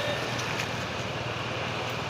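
Steady hum of street traffic, with motorcycles passing on the road.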